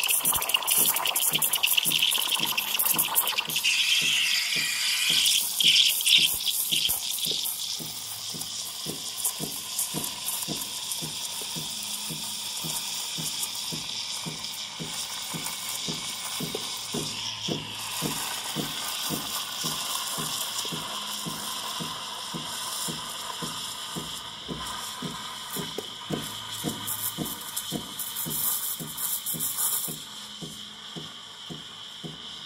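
Espresso machine steam wand frothing milk in a steel pitcher: a loud sputtering hiss for the first several seconds while air is drawn into the milk near the surface. It settles into a quieter, steady hiss as the wand sits deeper and the milk spins and heats, then cuts off suddenly at the very end.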